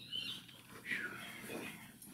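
Faint speech, a few short quiet voice sounds in a small room.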